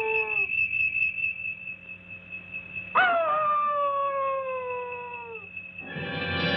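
Two long, falling, howl-like wails on a film soundtrack over a steady high whistle. The first dies away in the opening half-second. The second starts sharply about three seconds in and slides down in pitch for over two seconds.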